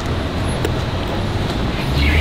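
Steady rumble of road traffic, an even background noise with no single event standing out.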